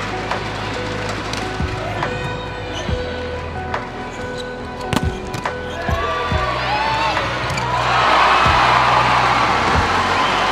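Indoor volleyball rally: sharp smacks of hands and arms on the ball, about once or twice a second at first, over arena crowd noise. The crowd rises to a loud cheer about eight seconds in. Background music runs under it all.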